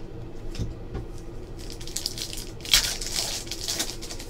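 Foil wrapper of a trading card pack being torn open and crinkled by hand. A few soft knocks at first, then crinkling that starts about halfway through, loudest near three-quarters of the way, dying away at the end.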